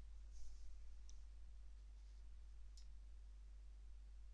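Near silence with a steady low electrical hum and two faint computer-mouse clicks, about a second in and near the three-second mark.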